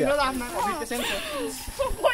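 Speech only: young people's voices talking, with no other sound standing out.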